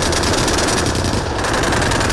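Rapid automatic cannon fire from a tracked self-propelled anti-aircraft gun: one continuous, loud burst of shots in quick succession.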